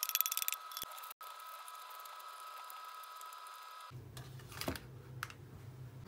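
Chopped cabbage and carrot slices pattering and scraping out of a metal bowl onto a parchment-lined baking tray: a rapid run of light clicks in the first half second. Then a steady faint hum, with a few scattered clicks near the end.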